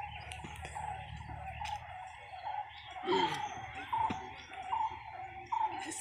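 Birds calling in the background: short chirps repeated about once a second.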